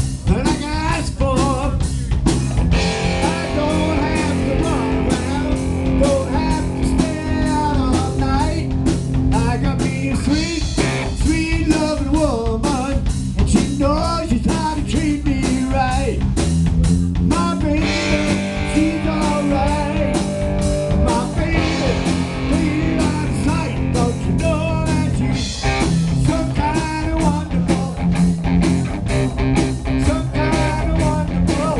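A live rock band playing: electric guitar, bass guitar and drum kit keeping a steady beat.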